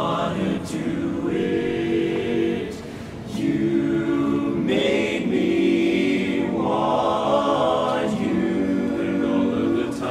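Men's barbershop chorus singing a cappella in close four-part harmony, moving through held chords with a short drop in level about three seconds in.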